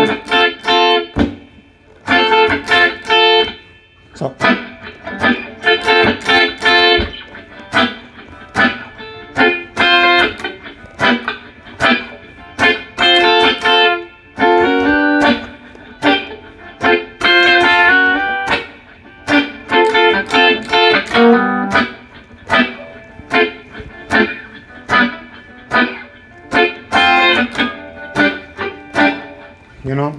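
Ibanez electric guitar playing a reggae rhythm part as a run of short, quickly choked chord stabs, with a few slides between chords.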